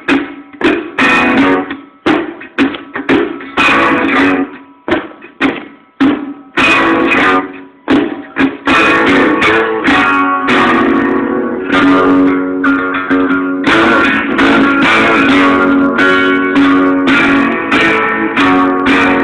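Guitar strummed in short, separate chord strokes that each die away for the first half, then in continuous ringing strumming from a little before the middle on.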